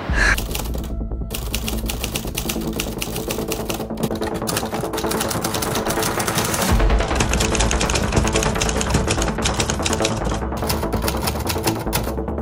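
Manual Remington typewriter being typed on quickly, a dense run of key strikes with a few short pauses, over background music.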